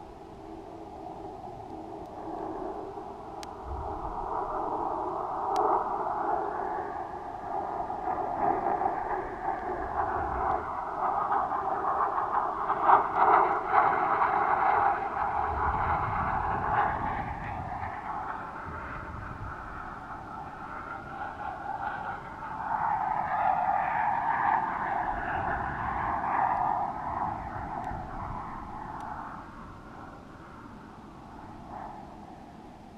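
Air rushing over a camera's enclosed housing on a weather-balloon payload, heard muffled. The rushing swells and fades in long waves, loudest about halfway through.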